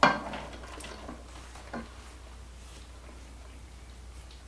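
Diced onion tipped off a plastic cutting board into a pot of sliced squash and water: the board knocks sharply against the pot as it starts, with a short ring, then a few light taps over the next two seconds.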